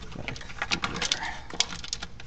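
Scattered sharp plastic clicks and small rattles of hands working an electrical connector and wiring in an engine bay, as the sensor plug is pushed and clipped back into place.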